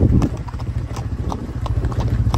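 Hooves clopping on a hard dirt road in irregular sharp clicks, over the low, steady pulsing of a slow-running motorcycle engine that eases off shortly after the start.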